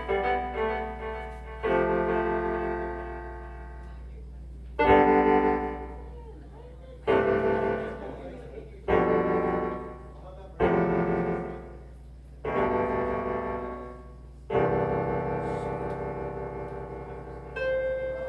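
Live keyboard music: slow, piano-like chords, each struck and left to fade, about every two seconds, over a steady low hum.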